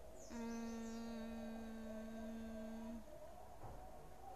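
A young woman humming one long, steady 'hmm' on a single flat note for close to three seconds, mouth closed, while she thinks over her answer.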